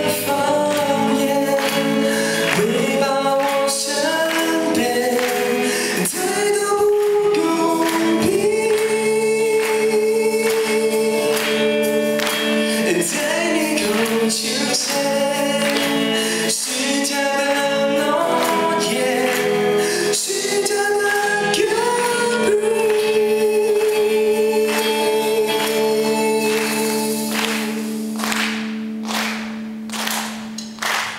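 Live rock band playing a song: a male lead vocal holding sung lines over electric guitar, bass guitar, drums and keyboard, with the level dipping briefly near the end.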